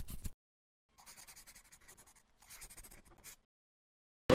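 Pencil-scribbling sound effect of rapid, scratchy back-and-forth strokes. A louder run stops just after the start, and a fainter run goes from about a second in until about three and a half seconds.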